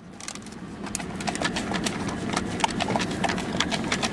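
A large deer, its head in through a car window, chewing and crunching feed pellets and nosing around. It makes a quick, irregular run of clicks and crunches over a snuffling rustle.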